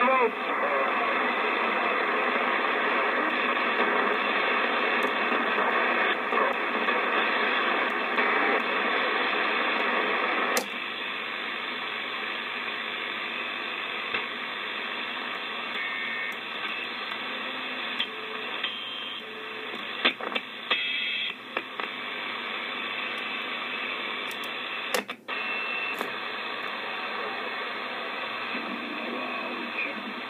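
Static hiss from a President Adams AM/SSB CB transceiver's speaker tuned across the 11-metre band, with faint, garbled voices in the noise. The hiss drops suddenly about a third of the way in. A few clicks follow past the middle as the channel selector is turned.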